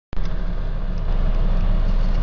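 Cabin noise of a car on the road: a steady low rumble of engine and tyres with an even hiss over it.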